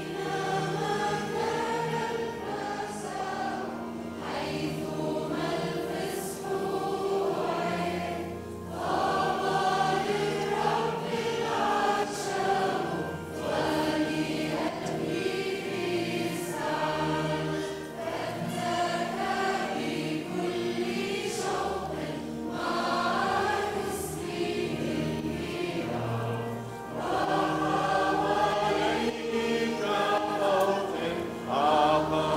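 Choir of girls and young men singing a hymn together over steady, held low notes.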